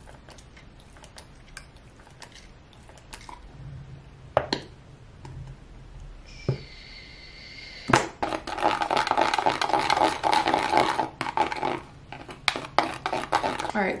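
Hair gel and leave-in conditioner being squeezed into and stirred together in a plastic tint bowl: a few soft clicks at first, then, about eight seconds in, a much louder, dense wet squishing and scraping that runs nearly to the end.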